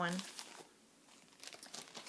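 A spoken word, then a few faint scattered clicks and rustles in the second half, as things are handled close to the microphone.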